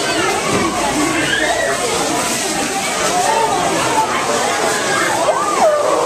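A crowd of people talking and exclaiming at once, many overlapping voices, with one voice swooping up into a high excited cry near the end.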